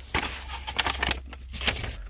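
Bubble wrap and mailer packaging crinkling and rustling as it is handled and pushed aside: a dense crackle of many small clicks, with a short pause partway through.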